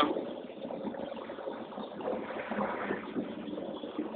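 Steady running and road noise of a vehicle moving slowly, heard from inside it.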